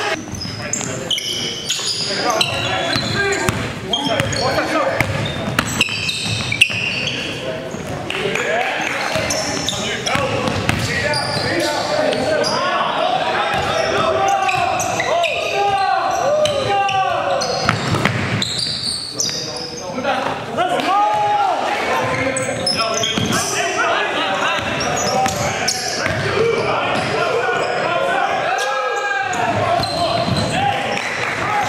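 Indoor basketball game sound: the ball bouncing on a hardwood gym court, sneakers squeaking, and players' voices calling out.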